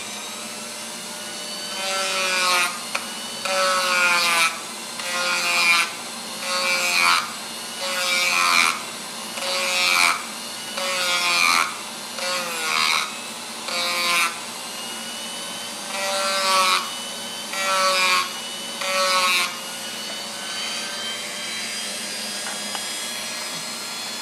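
A small handheld rotary tool runs steadily while its bit grinds down the edge of a Kydex plastic holster in short repeated passes, roughly one a second. Each pass is louder, with a whine that bends in pitch as the bit bites into the plastic. The passes stop near the end and the tool keeps running on its own.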